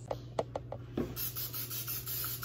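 A few light clicks, then an aerosol can of cooking spray hissing steadily into a frying pan from about halfway through.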